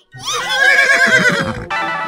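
A horse whinny, as a sound effect: one long wavering call that falls in pitch. Music starts abruptly near the end.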